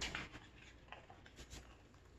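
Faint paper rustling and a few soft ticks from a hardcover picture book being handled as a page is turned.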